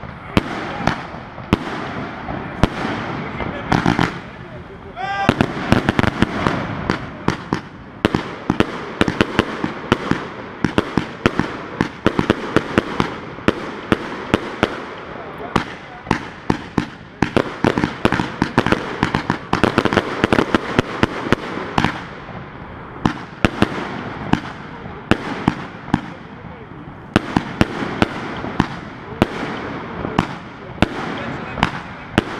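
A 288-shot 'Triplex' firework cake (U31415) firing continuously: a rapid run of launches and bursts, several sharp reports a second over a steady crackle.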